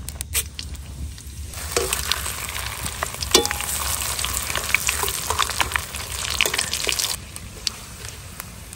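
Whole spices, bay leaves and dried red chillies, frying in hot oil in a steel karahi over a wood fire: the sizzle starts about two seconds in and falls away near the end. A metal spatula clicks and scrapes against the pan as it stirs.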